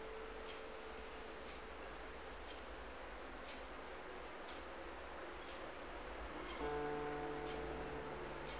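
Solo guitar in a sparse passage: a held note rings and dies away over the first few seconds, then a new note or chord is plucked about two-thirds of the way through and left ringing. A steady tick sounds about once a second throughout, plain in the silences between notes.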